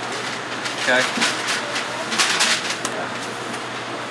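Fast-food counter room tone: a steady low hum of ventilation, with a few short spoken words about a second in and a brief hissy noise about two seconds in.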